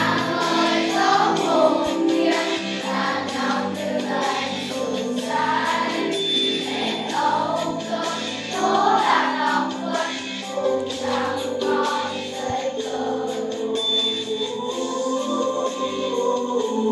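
A class of schoolchildren singing a song together over a music track with accompaniment.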